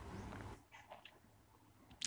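Near silence: faint room tone with a low hum that fades about half a second in.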